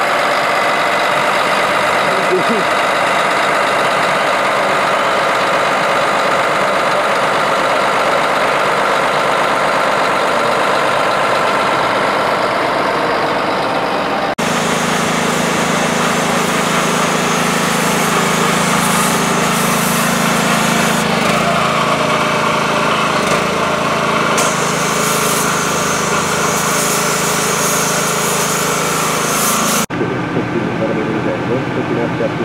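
New Holland 1915 forage harvester's engine running steadily at close range. About halfway through this gives way to a small engine-driven pressure washer running, with a hiss that comes and goes as the spray is turned on the machine to wash it.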